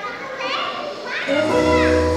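Small children's high-pitched voices calling out with rising and falling pitch. About a second and a half in, music starts with long held notes over a low bass.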